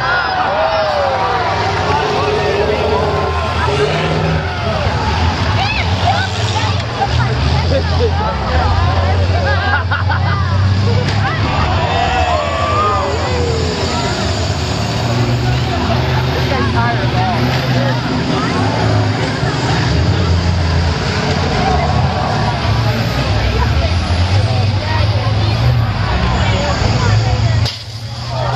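Several school bus engines running hard in a demolition derby, under many crowd voices shouting and cheering. A few short knocks come about ten seconds in.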